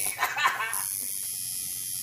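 Coil tattoo machine buzzing steadily against the skin. A short burst of voice, a groan or laugh from the person being tattooed, comes near the start.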